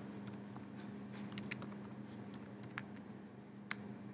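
Computer keyboard typing: a run of light key clicks as a short command is keyed in, ending with a sharper single keystroke near the end, over a steady low hum.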